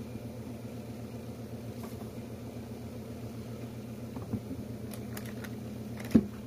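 A steady low mechanical hum, with a soft knock about four seconds in and a few light clicks near the end.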